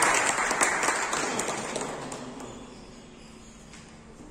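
A room of people applauding, the clapping dying away over about three seconds.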